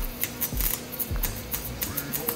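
A 120-volt MIG welder set to max power, its arc crackling in a fast, irregular patter while it welds.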